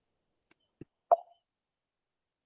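Three brief clicks, the last and loudest a short pop about a second in.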